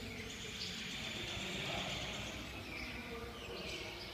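Background ambience: a high, hissing buzz that swells in the middle and fades again, over a steady low hum.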